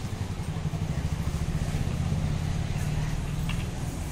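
A motor vehicle engine running steadily with a low rumble, growing a little louder over the first second or two.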